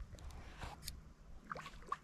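Faint, irregular splashing and sloshing of water as a hooked fish thrashes and swirls at the river surface during the fight, in a few short bursts.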